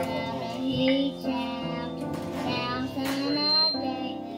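Young girls' voices singing a gospel hymn with instrumental accompaniment, holding long notes.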